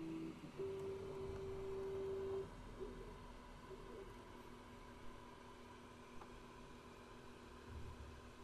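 FlashForge Finder 3D printer's stepper motors whining faintly as it starts laying down the first lines of filament: a steady tone that stops just after the start, a slightly higher steady tone for about two seconds, then softer tones that shift in pitch as the print head moves.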